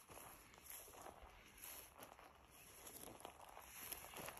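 Faint, soft footsteps through dry prairie grass, a step about every half second, the whole very quiet.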